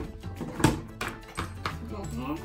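Rigid clear plastic packaging being lifted out and handled, giving a few sharp clacks, the loudest about two-thirds of a second in, over background music.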